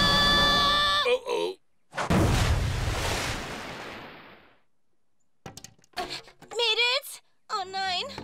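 A cartoon explosion: a high, held charging tone cuts off about a second in, then a sudden loud blast about two seconds in that fades away over the next two seconds. Near the end come a few clicks and wobbling, voice-like sounds among the wreckage.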